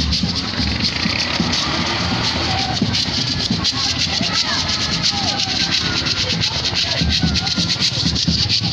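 Procession music: several voices singing together over a fast, steady rattle of shakers.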